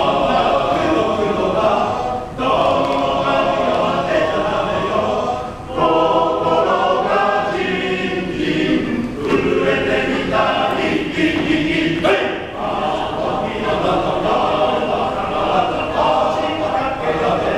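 Male choir singing in harmony, phrase after phrase, with brief breaks between phrases about two and a half, six and twelve seconds in.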